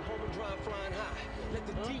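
Men's voices talking and shouting over a steady low rumble.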